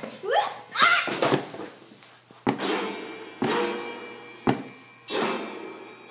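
A person crying out with rising pitch in the first second or so. Then come four sudden loud hits about a second apart, each ringing on with a held tone before it fades.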